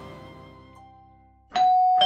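Soft background music fading out, then an electric doorbell chiming ding-dong about a second and a half in, a higher note followed by a lower one, as its wall button is pressed.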